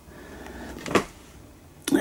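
Handling noise as a cardboard laserdisc jacket is moved: a faint rustle and one brief knock about a second in.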